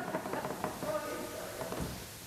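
Voices in a large church, with steady tones like the last of an organ passage underneath and a few light knocks; the sound drops lower near the end.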